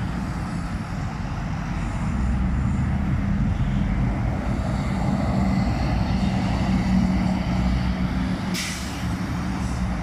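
Diesel articulated city buses running as they pull away and pass, a steady low engine drone over highway traffic that swells and then fades. A short burst of air-brake hiss comes near the end.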